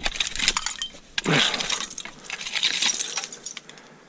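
Hand digging tool scraping and raking through dump soil packed with broken glass and crockery, giving a run of irregular clinks and gritty scrapes.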